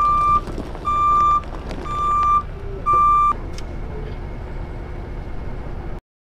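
A ten-wheel dump truck's back-up alarm beeps about once a second, four beeps that stop a little over three seconds in as the truck comes out of reverse. Its diesel engine keeps running underneath, and a short click comes just after the last beep.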